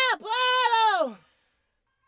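A man's singing voice holding a note near C5 with a fast, wavering vibrato, then sliding down in pitch and cutting off a little over a second in.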